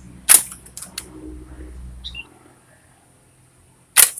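Homemade PVC-pipe rubber-band shooter firing at plastic cups: sharp snaps of the band being released and the shot striking, with a loud snap about a third of a second in, lighter clicks around one second, and another loud snap at the very end.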